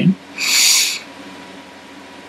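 A short, loud hiss of rushing air, about half a second long, starting just under half a second in. After it comes a faint, steady room hum.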